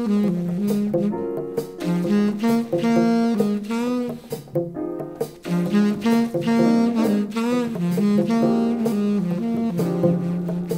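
Jazz recording: a saxophone plays a slow melodic line of held notes over drums that strike steadily throughout.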